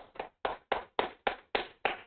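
Hands clapping: a run of evenly spaced single claps, about three or four a second, applause at the close of a talk.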